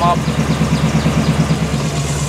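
4x4 wrecker's engine idling steadily close by, with an even, rapid pulsing beat.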